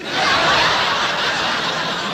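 Studio audience laughing at a punchline. The laughter breaks out all at once, peaks in the first half second, then slowly dies down.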